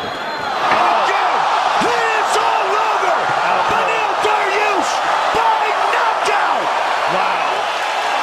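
Arena crowd cheering loudly after a knockout, with excited voices shouting over the din and a few sharp smacks of impacts scattered through it.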